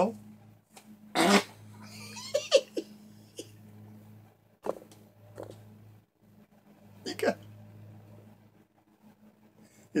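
A man laughing in several short, breathy bursts and chuckles, with pauses between them. A steady low hum runs underneath, dropping out briefly about six seconds in.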